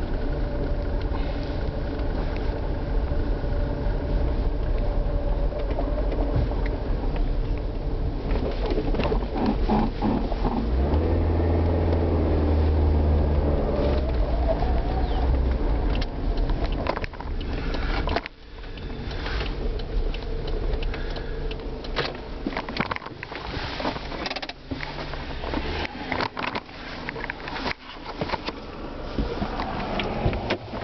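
Steady rumble of a car heard from inside its cabin, with a deeper engine drone swelling for a few seconds around the middle. In the second half, frequent knocks and clicks from the camera being jostled and handled.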